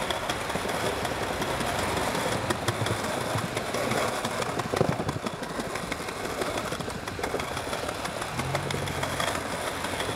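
Skateboard wheels rolling on a paved sidewalk during a long manual: a steady rumble with small clicks over cracks and seams, and one louder knock about five seconds in.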